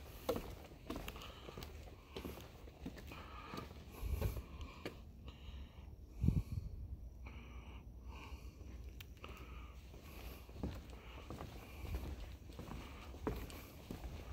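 Footsteps on a wooden boardwalk, a soft knock every half second to a second, over a low rumble of wind on the microphone.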